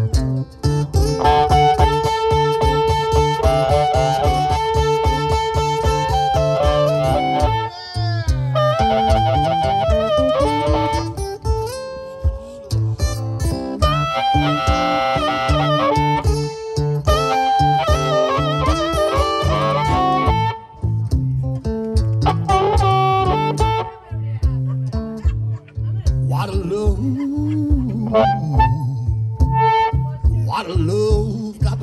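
Acoustic blues boogie played live: a Cole Clark acoustic guitar drives a steady boogie rhythm while a harmonica plays lead lines over it, bending some of its notes.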